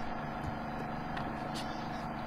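A steady mechanical hum, with a few faint clicks scattered through it.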